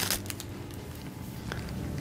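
Faint handling of a small clear plastic bag holding doll sandals: a few soft rustles at first, then a light tick later, over quiet room tone.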